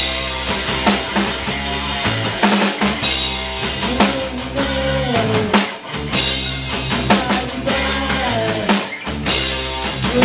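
Live punk rock band playing: a drum kit beating steadily under electric guitar and bass, with notes that slide down in pitch several times.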